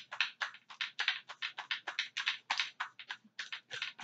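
A homemade deck of reading cards being shuffled by hand: a quick run of short card strokes, about five or six a second.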